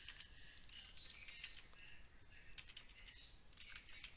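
Faint, irregular keystrokes on a computer keyboard as text is typed and corrected.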